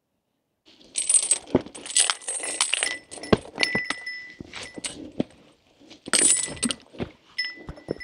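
Hiking footsteps knocking and scuffing on rough serpentinite rock during a steep climb, starting about a second in, with intermittent metallic jingling.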